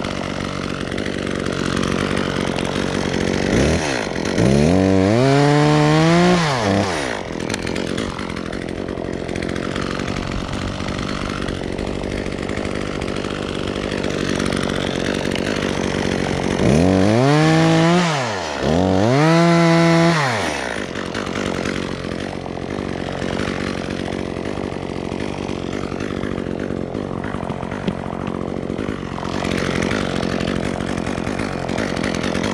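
ECHO top-handle two-stroke chainsaw idling steadily, revved up and let back down to idle three times: once a few seconds in, then twice in quick succession past the middle.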